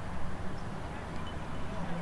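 Faint distant voices over a low steady hum of outdoor background noise.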